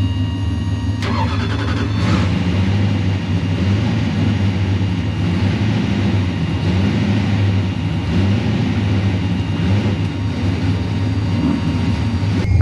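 Turbocharged Mustang drag car's engine idling, heard from inside the cockpit, its lumpy note swelling and sagging every second or two.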